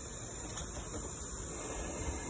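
Steady outdoor background hiss with a high, unbroken insect drone running through it; no distinct event.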